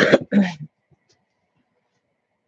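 A woman coughs twice in quick succession, two short harsh coughs within the first second.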